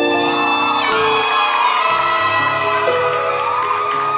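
Soprano saxophone playing a slow pop ballad melody live over bass and chord accompaniment, the notes held and gliding into one another.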